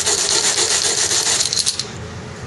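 Cut end of a carbon fibre seatpost rubbed back and forth on sandpaper laid flat, a fast, even rasping of quick strokes that stops near the end. It is smoothing off a spot where the fibres broke through at the end of the saw cut.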